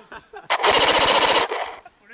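Airsoft rifle firing a full-auto burst of rapid, evenly spaced shots, lasting about a second.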